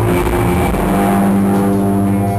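Live rock band playing loud, with a distorted electric guitar chord held and ringing on over a noisy wash in the first second.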